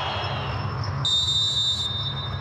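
A referee's whistle blown once for the second-half kick-off: a single held high blast of under a second, starting about halfway in and cutting off sharply, over a low, steady stadium rumble.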